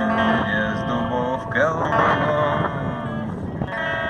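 A man singing a slow song into a microphone, accompanied by an amplified electric guitar. He holds long sung notes over the guitar.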